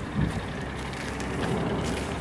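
Steady low rumble of outdoor city background noise, with no distinct event standing out.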